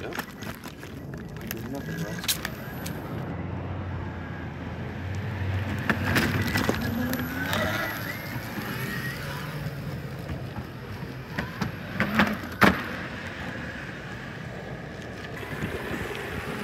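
Electric skateboard rolling over concrete sidewalk and asphalt, its wheels giving a steady rolling noise with several sharp knocks as they drop over cracks and the curb edge. A low hum rises and falls through the middle.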